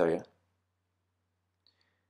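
A man's short spoken "yeah", then near silence with one faint click about a second and a half in.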